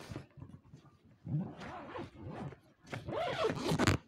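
Zipper on a soft-sided trolley suitcase being pulled shut around the lid in a few strokes. Near the end comes a short, drawn-out vocal sound from the man.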